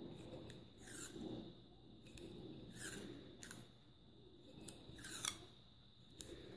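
Faint handling of washi tape on a small glass jar: a few short rasps as the paper tape is pulled and pressed and smoothed onto the glass.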